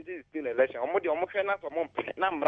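A phone-in caller talking steadily over a telephone line, the voice thin and narrow as phone audio sounds.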